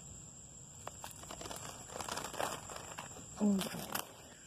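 Light rustling and a few small clicks of close handling, over a steady high-pitched drone of cicadas; a person's voice is heard briefly near the end.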